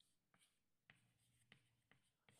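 Very faint chalk writing on a blackboard: a few light ticks of the chalk against the board, otherwise near silence.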